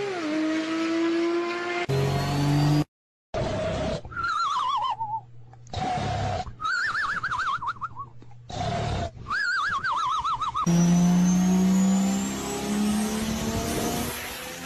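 Car sound effects cut together in short pieces: warbling tire squeals, then an engine revving that climbs slowly in pitch near the end. The audio drops out briefly about three seconds in.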